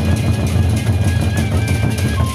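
Gendang beleq ensemble playing: large Sasak barrel drums beaten with sticks and hands in a dense, fast rhythm, with hand cymbals and a couple of held high tones ringing above.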